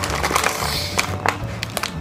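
Light background music with the crinkling and crackling of a foil snack bag of honey butter potato chips being handled and pulled at to open it.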